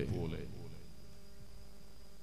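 A pause in a man's speech: his last word fades out in the first half second, then only a faint, steady hum with a thin high whine remains.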